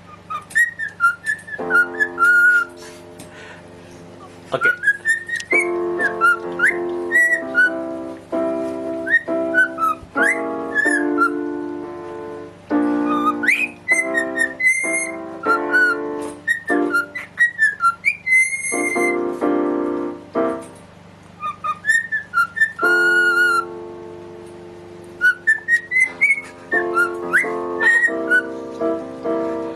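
A cockatiel whistling a tune in short phrases of gliding notes, along with piano chords played on a keyboard. The whistles and the chords alternate and overlap, with a few short breaks in the piano.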